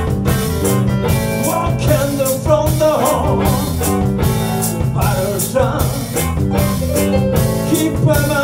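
Live blues band playing a steady beat on a drum kit under electric guitar and keyboard, with sung or bent lead lines rising and falling over it.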